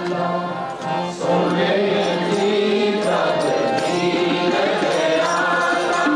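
Sikh kirtan: voices singing a devotional hymn to harmonium accompaniment, with a steady drone note held underneath the melody.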